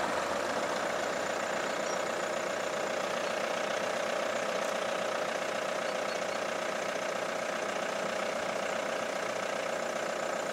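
An engine idling steadily.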